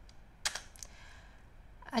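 Computer keyboard key pressed to advance a presentation slide: one sharp click about half a second in, followed by a couple of fainter clicks.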